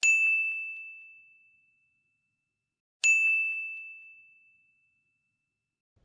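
Two identical bell-like dings about three seconds apart. Each is a single high ringing tone that fades out over about a second and a half: an edited chime sound effect.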